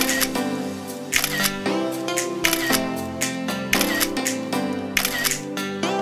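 Background music with a steady beat: sustained bass and chords under sharp, clicky percussion hits recurring at an even pace.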